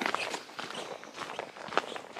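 Footsteps walking along a dirt trail, a quick irregular series of soft steps.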